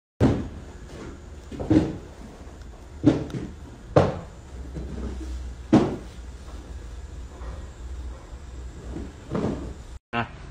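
Handling knocks and bumps, about six spread through, over a low steady hum.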